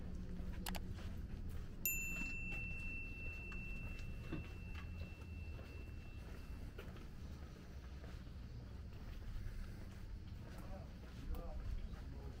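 Walking ambience in a narrow stone alley: a steady low rumble, a few scattered footstep clicks and the voices of passers-by. About two seconds in, a single clear high ringing tone starts sharply and holds for about five seconds before stopping.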